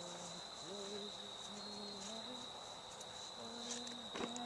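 Steady, high-pitched insect trilling, typical of crickets, running without a break. Under it, a faint low pitched sound comes and goes in short stretches.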